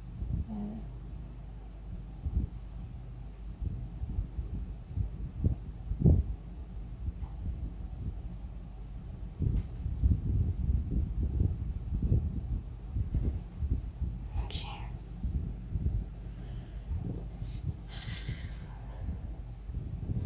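Pencil drawing on paper resting on a table, heard as irregular soft, low rubs and taps of the strokes and the hand moving on the sheet.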